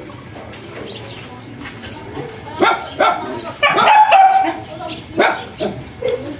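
A dog barking about four times, starting a little before halfway through, with one longer, drawn-out bark among them.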